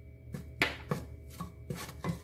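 Wooden spoon stirring in a metal pressure-cooker pot, scraping and knocking against the pot in a series of about six uneven strokes.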